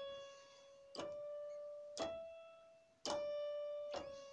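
Electronic keyboard played one note at a time in a slow melody line, a note about every second, each ringing and fading before the next. The third note is a little higher than the others.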